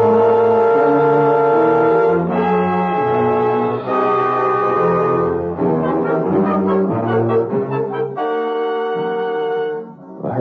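Dramatic orchestral music cue led by brass, a run of held chords that shift every two seconds or so and stop near the end.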